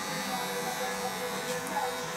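Cordless electric hair clippers buzzing steadily as they cut hair at the side and back of the head.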